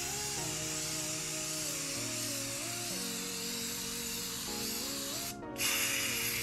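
Aerosol can of sandable spray primer hissing steadily as it is sprayed onto MDF. The spray stops briefly about five seconds in, then starts again.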